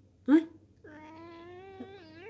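Domestic cat giving one long, drawn-out meow, about a second and a half, steady in pitch, rising slightly and then dipping at the end.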